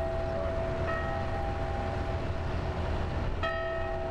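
The W.P. Snyder Jr. steamboat's bell rung slowly, struck about a second in and again near the end, each strike ringing on with a long steady hum. It is a farewell signal to the people on shore, rung in place of the whistle, with a low rumble underneath.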